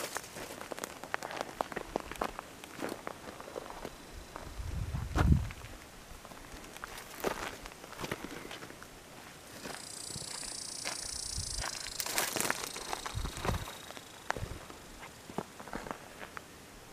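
Footsteps crunching on loose rocky gravel, irregular and unhurried. There is a short low rumble about five seconds in, and a steady high buzz lasting about two seconds near the middle.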